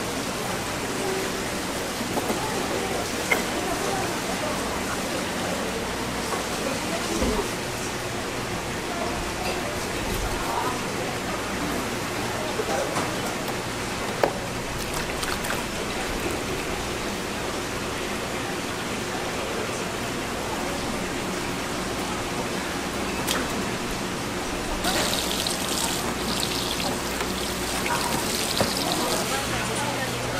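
Busy fish-market ambience: a steady hubbub of background voices and market noise, with a few sharp knocks of a knife on a plastic cutting board as fish are filleted, and water sloshing as fish are rinsed in a basin.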